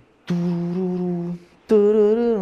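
A man hums two long wordless notes as a mock rendition of a song. The first note is held steady, and the second, after a short pause, wavers up and down in pitch.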